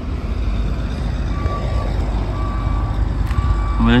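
Vehicle reversing alarm beeping about once a second, a steady single-pitched tone starting about a second in, over a steady low engine rumble.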